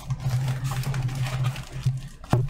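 Cardboard shipping box being opened by hand: irregular scraping and rustling of cardboard and packing, over a steady low hum.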